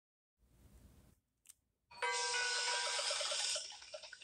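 A short chiming musical sting from the TV show's soundtrack, heard through the TV speaker. It starts about halfway in as several held bell-like notes over a quick repeated pulse, and fades near the end.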